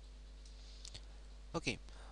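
Two faint computer mouse clicks a little under a second in, over a low steady hum.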